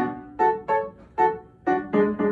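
Outro music: a short melody of single keyboard notes, piano-like, each struck and fading, a few played in quick succession.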